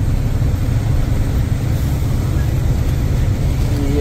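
Fourteen-wheel Tata diesel truck running at speed, its engine and road noise making a steady low rumble with no change through the moment.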